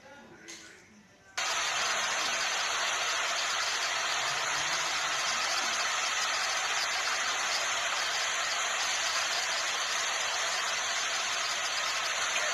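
Faint voices, then about a second and a half in a loud, steady hiss of noise starts abruptly and holds level, with no rhythm or pitch in it.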